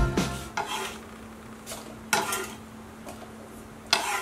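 Background music fading out at the start, then a few scattered scrapes and light knocks of kitchen utensils being handled on a counter, over a faint steady hum.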